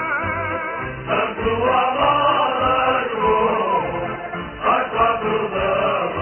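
Music with singing: a sung melody with wavering vibrato at first, then fuller voices coming in together about a second in, and again near the end.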